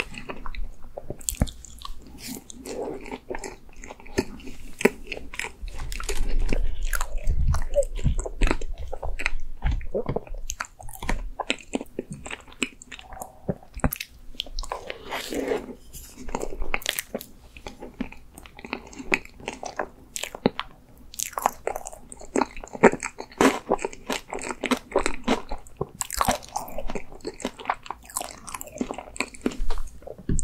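Close-miked eating sounds: spoonfuls of ice cream cake being bitten and chewed, with many sharp, wet mouth clicks and smacks.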